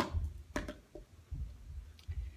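A sharp click of a putter striking a golf ball, followed by soft low thumps and a couple of faint knocks.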